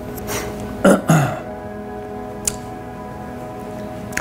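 Soft background music of steady held tones. About a second in, a man makes two short throaty sounds, low in pitch and falling, and there is a single sharp click about two and a half seconds in.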